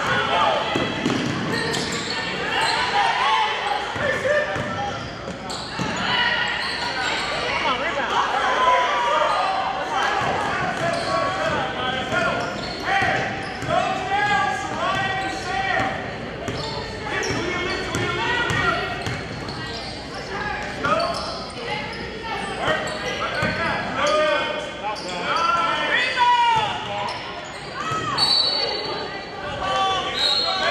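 Basketball game sounds in an echoing gym: the ball bouncing on the hardwood, sneakers squeaking, and players and spectators calling out indistinctly.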